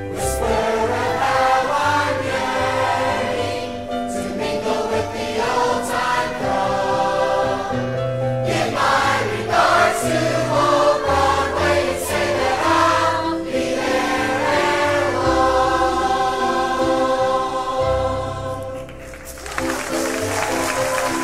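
A cast chorus singing a Broadway number with accompaniment, recorded live during a stage performance. The music dips briefly near the end.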